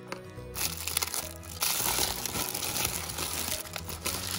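Paper and foil toy wrapping crinkling as it is pulled apart and unwrapped by hand. The crinkling starts about half a second in and grows louder after a second and a half. Background music runs underneath.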